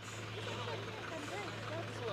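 Steady low hum of an aircraft engine running at an airfield, with faint voices in the background.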